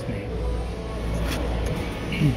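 Store background noise: a steady low rumble with a faint even hiss and faint distant voices.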